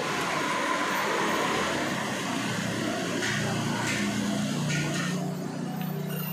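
Steady road-traffic noise with a motor vehicle engine running nearby, its low hum growing stronger in the second half. A few faint clicks of a spoon stirring in a bowl.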